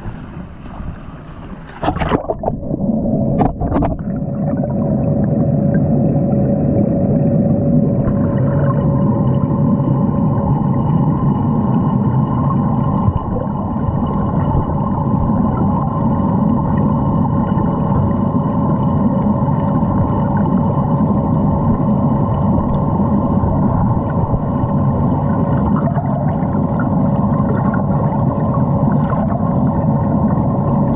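Muffled, steady underwater rumble picked up by a camera submerged in a shallow fountain basin, with a faint steady hum running through it. A few sharp knocks come about two to four seconds in as the camera goes into the water.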